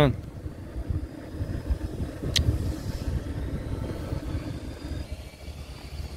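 Steady low rumble of a car driving along a paved road, heard from inside the cabin, with one brief click partway through.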